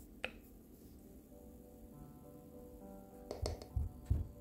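Quiet background music with soft sustained notes, and a few low knocks near the end.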